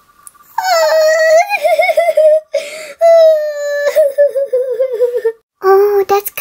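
A girl's high voice acting out loud, exaggerated crying: two long, wavering wails, the second sagging lower in pitch as it trails off, and a third cry starting near the end.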